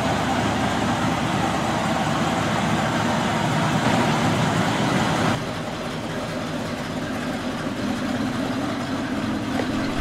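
A 1973 Ford Mustang's 351 cubic inch V8 running through its dual exhaust. It is steady and a little louder for the first half, then drops suddenly to a quieter, lower-revving run about halfway through.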